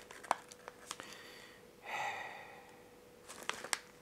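A cookie packet being handled: scattered sharp crinkles and crackles, with a short louder rustle about two seconds in.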